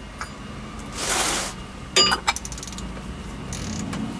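Steel socket and extension bar clinking onto the oil drain plug under a Hyundai Porter 2 truck: a loud ringing metal clink about two seconds in, then a quick run of lighter clicks, with a brief hiss just before.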